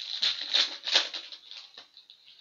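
Foil wrapper of a Synergy hockey card pack crinkling and tearing as it is opened by hand, an irregular crackling rustle with several sharper crackles in the first second.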